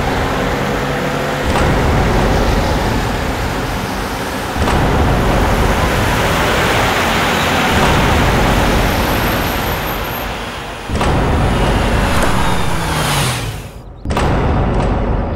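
A car driving along a road, steady engine and tyre noise that jumps abruptly at a few points. Near the end its engine note falls as it slows and pulls up.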